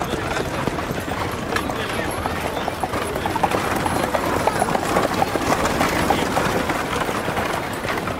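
Old West town street ambience: horse hooves clip-clopping in a steady run of knocks over a bustle of indistinct voices.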